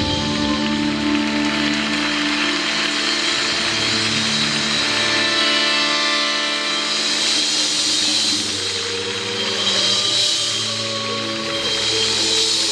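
Live show band music: sustained chords under a swelling wash of noise in the upper range.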